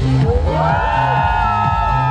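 Loud electronic dance music with a pulsing bass beat and a long held melodic note that enters about half a second in.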